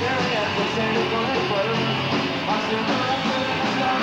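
Punk rock band playing live: fast, loud electric guitars, bass and drums with a lead singer's vocals over them.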